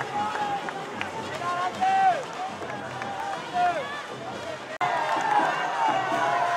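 A crowd of schoolboys shouting and chanting, many voices overlapping. About five seconds in, the sound breaks off abruptly and picks up again as louder, denser cheering.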